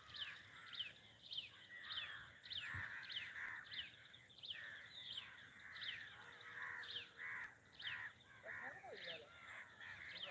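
A chorus of birds calling, with crows cawing among them and short falling calls repeating about twice a second.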